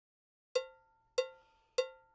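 Metronome count-in: three evenly spaced, short, pitched clicks with a cowbell-like ring, about 0.6 s apart, starting about half a second in.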